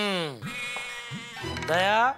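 Comic background music sting with a voice-like sound whose pitch swoops up and down, once at the start and again louder near the end.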